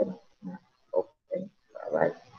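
A person's voice making four short low sounds about half a second apart, with no clear words.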